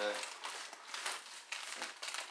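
Plastic wrapping on frozen meat packages crinkling and rustling irregularly as they are shifted and lifted out of a chest freezer.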